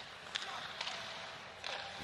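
Ice hockey arena ambience during live play: a steady wash of crowd noise with a couple of sharp clicks from sticks and puck on the ice.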